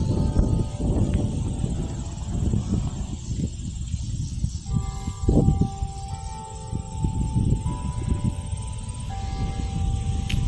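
Church bells start ringing about halfway through, a sequence of long held notes with a new note entering every second or so. Underneath, a steady low rumble of wind on the microphone.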